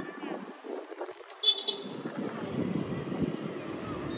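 Distant city traffic with a short, high toot of a car horn about a second and a half in.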